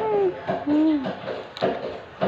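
A person humming two short notes, the first gliding slightly down, the second lower and arching up and down.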